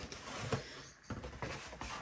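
Faint rustling of packaging being handled, with a few light clicks and small knocks.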